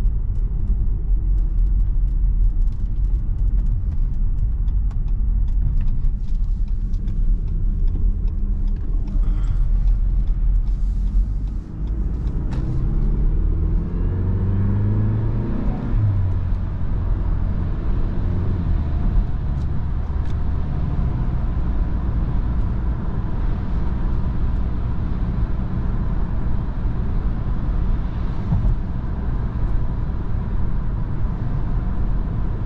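Inside the cabin of a Mitsubishi ASX II, its 1.3-litre four-cylinder petrol engine runs under a steady low rumble of tyre and road noise. The car speeds up from about 45 to 80 km/h. Just before halfway there is a short dip in level, then the engine note rises for a few seconds as it pulls, before settling into an even cruising drone.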